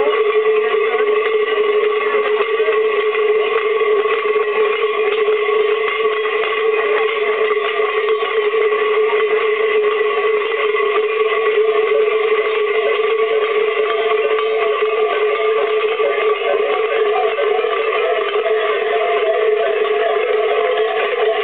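Many large cowbells (cencerros) worn by carnival dancers clanging together in a continuous din as they move and jump, with fixed ringing pitches and no pause.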